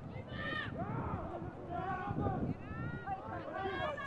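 Faint, distant shouts and calls of several voices from players and sideline onlookers on a rugby league field, heard through the field microphone.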